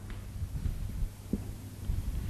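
Steady low electrical hum from the microphone's sound system, with soft irregular low knocks.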